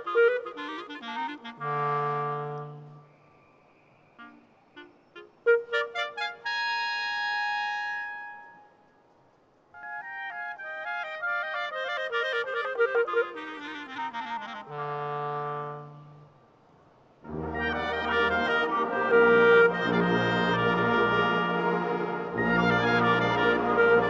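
Two clarinets play a solo passage of fast runs and long held notes with short pauses, twice answered by a brief held chord from the full wind band. About three quarters of the way through, the whole wind band with brass comes in and plays on.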